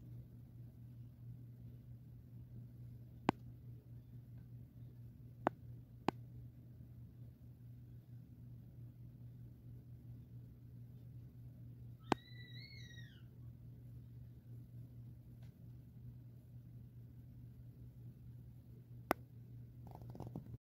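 Faint steady low electrical hum, with a few sharp clicks and one short chirp that rises and falls about twelve seconds in.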